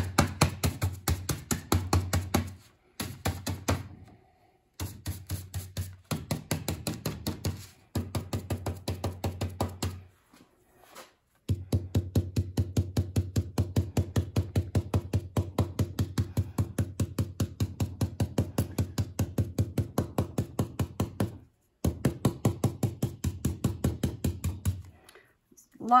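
Stencil brush pouncing paint through a mylar stencil onto a fabric pillow case: rapid dull taps, about five a second, in runs broken by short pauses.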